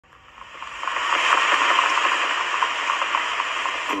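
A steady hiss that swells in over the first second and then holds, with no beat or tune in it.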